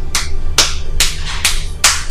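Slow, sarcastic hand clapping: about five single claps roughly half a second apart, over background film music.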